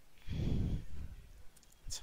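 A man's audible sigh, one long breath out into a close microphone lasting under a second.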